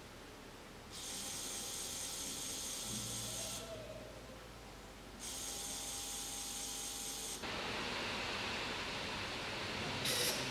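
Small DC gear motor switched on and running with a high hiss, in two spells starting about a second in and again around five seconds. A broader, lower hiss takes over from about seven seconds on.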